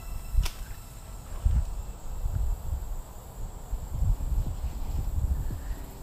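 Low, uneven wind and handling rumble on the microphone, with one sharp snap about half a second in. A fishing line snagged over a tree is being pulled until it breaks off.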